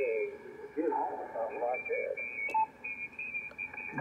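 Single-sideband voice audio from a Yaesu FTdx5000MP receiver on 75 meters: a faint talker, with the garbled, high-pitched squawk of another conversation 2 kHz down bleeding in at the top of the passband. There is a click and a short beep about two and a half seconds in.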